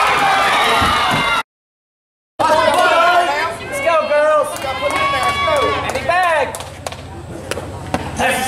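Several voices shouting and chanting cheers, with held and sliding calls. The sound cuts to total silence for about a second about a second and a half in, then the voices start again.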